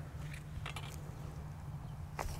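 Small hand trowel digging into dry, crusted soil, giving a few faint short scrapes over a low steady rumble.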